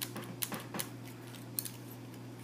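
Metal lamellar plates, laced in two rows with paracord, clinking and sliding against each other as the rows are pushed together and flexed by hand: a handful of light clicks.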